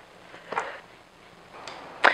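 Quiet kitchen room tone, with one brief soft sound about half a second in and a faint tick near the end.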